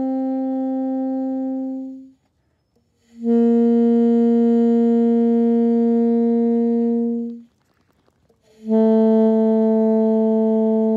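Alto saxophone playing long, evenly held single notes with short breaths between them: one ends about two seconds in, the next lasts about four seconds, and a third, slightly lower one starts near the end. The notes are played slowly and without rhythm, as a notes-only sight-reading exercise.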